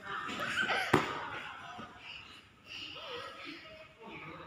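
A single sharp thud about a second in, an impact on the padded floor of a small soft-play soccer pit, over faint voices.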